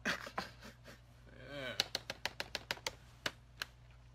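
A quick run of about ten sharp, light clicks, roughly six a second, starting about halfway through and lasting nearly two seconds, after two short bits of voice.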